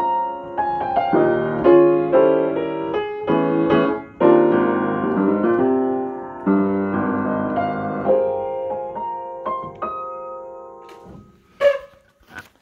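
A 1972 Yamaha spinet piano being played: a passage of struck chords and melody notes. The last chord rings and fades out about eleven seconds in.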